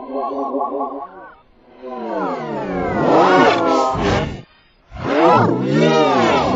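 Heavily pitch-shifted, distorted cartoon voice audio. A warbling tone lasts about a second, then two long roar-like, voice-like slides swoop down and back up in pitch, loud.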